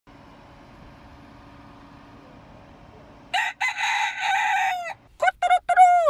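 A rooster crowing: about three seconds in, one long, loud crow ending in a falling note, quickly followed by a second, choppier crow. Before the crowing there is only a faint steady background hum.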